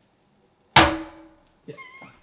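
A cement-filled prop milkshake glass set down hard on a tabletop: one heavy thunk about a second in, with a short low ring that dies away.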